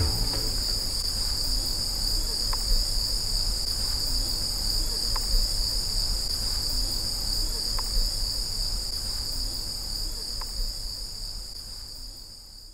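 Steady, high-pitched insect drone, with faint short chirps about every two and a half seconds, slowly fading out.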